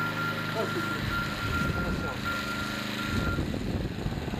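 A single steady tone from the amateur radio transceiver, keyed on and off in stretches of about a second, over a steady low hum.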